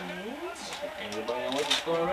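Voices talking quietly, with light rustling and small clicks of wrapping from a small gift being opened about halfway through.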